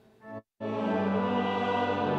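Congregation singing the Matins liturgy with organ accompaniment, starting about half a second in after a brief near-silent gap, full and steady with many held notes.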